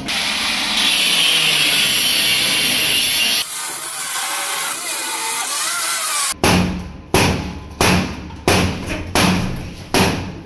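Angle grinder cutting through a metal bar that holds a door shut: a loud, harsh whine for the first three and a half seconds, then a quieter stretch. From about six seconds in comes a run of heavy bangs, roughly every two-thirds of a second, as the door is shoved and struck to break it loose.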